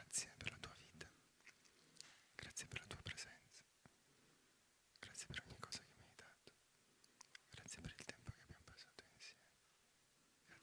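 Quiet whispering: a few short whispered phrases with pauses between them, the participants' whispered words of thanks during a guided meditation.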